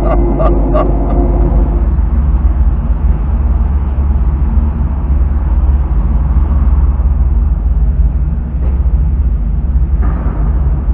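Car engine running as the car creeps forward at low speed, heard from inside the cabin as a loud, steady low rumble.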